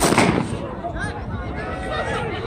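A starter's pistol fires once, a sharp crack that signals the start of a race, with a short echo trailing off.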